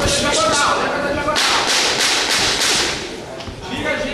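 Boxing gloves landing in a quick flurry of sharp slaps, about six in a second and a half, with shouting voices around them.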